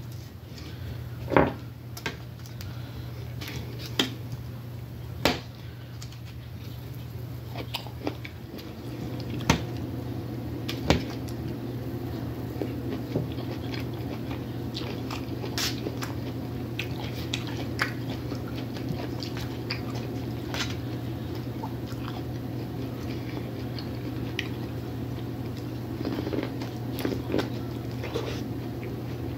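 Close-miked mouth sounds of someone eating: biting and chewing food from a steak and vegetable foil pack, with scattered sharp clicks in the first ten seconds. A steady low hum runs underneath.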